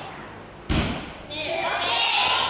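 A gymnast's feet landing on a balance beam with a single heavy thud, followed by a high voice calling out.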